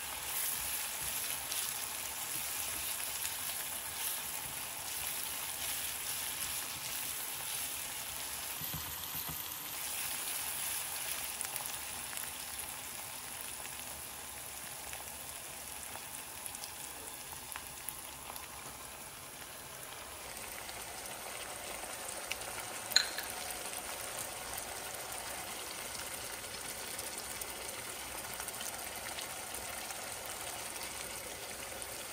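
Sliced onions and chili paste sizzling in hot oil in a nonstick frying pan, stirred with a spatula near the start. One sharp click about two-thirds of the way through.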